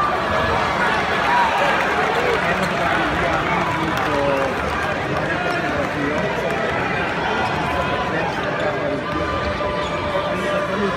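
Spectators talking all at once, a steady din of many overlapping voices.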